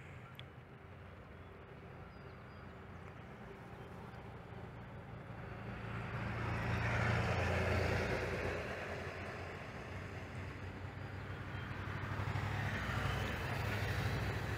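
Tour boat's engine running with a steady low hum, along with the rush of its bow wave as the boat comes head-on towards the lock wall. The sound grows louder to a peak about halfway through, eases, then builds again near the end.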